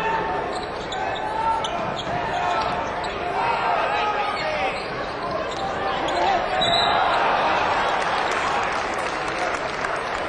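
Basketball bouncing on an arena court over a steady background of crowd voices.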